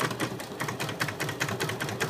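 Computerized embroidery machine stitching, its needle clattering up and down in a fast, even rhythm as it sews lettering into fabric held in the hoop.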